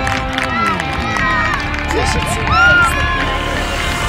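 Excited shouts and cheering from girls' youth soccer players and spectators celebrating a goal, with music playing underneath.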